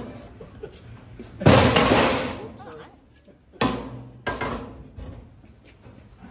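Three sharp knocks on a stainless-steel water trough, each ringing briefly: the first and loudest about one and a half seconds in, two more close together about two seconds later.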